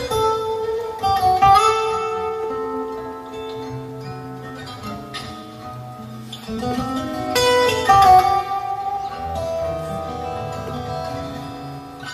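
Solo acoustic guitar played fingerstyle: plucked melody notes ringing over a bass line, with louder strummed chords about a second and a half in and again around seven to eight seconds in.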